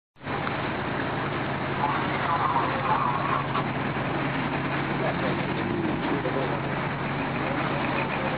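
Steady low engine hum of a ship under way, with a continuous rush of wind and sea. Faint distant voices call out now and then.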